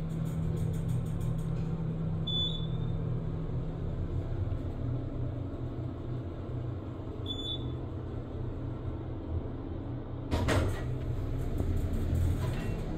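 Otis elevator cab riding up with a steady low hum, two short high beeps about five seconds apart, then a louder burst of noise near the end as the doors open.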